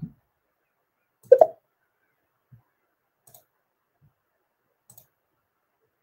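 One short, loud click about a second and a half in, followed by a few faint ticks, with silence in between.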